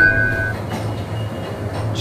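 Oil expeller cold-press machine running, its 10 HP three-phase motor and gearbox giving a steady low hum and mechanical rumble. A high ringing tone carries into the start and stops about half a second in.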